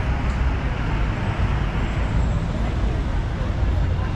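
Busy street ambience: a steady mix of indistinct crowd voices and traffic rumble, with no single sound standing out.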